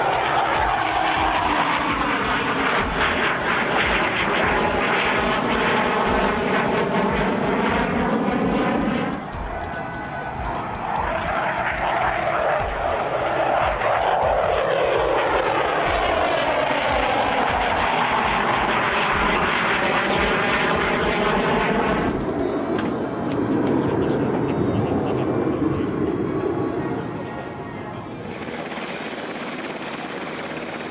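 Jet noise from a JASDF F-15 Eagle fighter's twin turbofan engines as it flies past during an air show display, loud, with the sound sweeping up and down in pitch as it passes. There are two such passes, the second starting about ten seconds in, and the sound drops off near the end.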